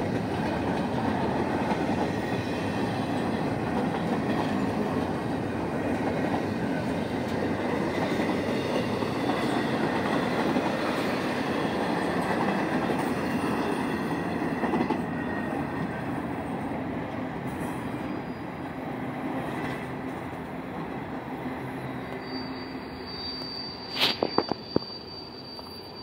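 CSX double-stack intermodal freight train passing close by: steady rumble and clatter of wheels on rail, fading over the last ten seconds as the end of the train goes by. A brief high squeal and a few sharp clacks come near the end.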